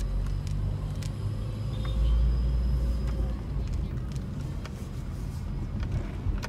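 Car driving noise heard from inside the cabin: a low engine and road rumble that swells about two seconds in and eases off after.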